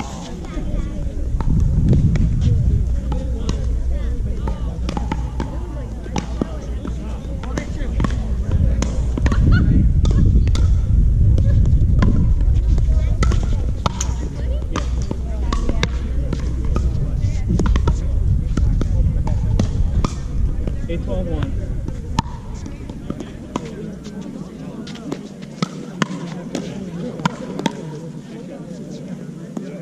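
Pickleball doubles rallies: paddles hitting a plastic pickleball give repeated sharp pops, irregularly spaced. Under them is a low rumble that eases off after about twenty seconds.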